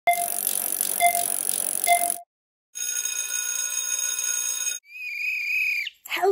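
Film-leader countdown with projector crackle and three short beeps about a second apart. After a short gap, a steady electronic ringing tone lasts about two seconds. Near the end, a coach's whistle is blown for about a second with a warbling trill.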